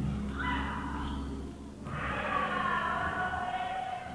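A drawn-out voice in the background, sung or chanted rather than spoken, in two long phrases with slowly gliding pitch.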